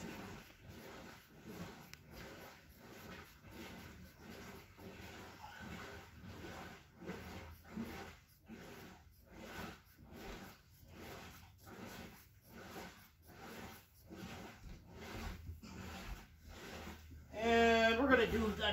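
Scissors cutting through cloth: a steady run of short snips, about two a second.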